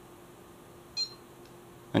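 A single short electronic beep from a Bully Dog GT gauge tuner about a second in, as its gauge button is held down to switch to the four-gauge display, over a faint steady hum.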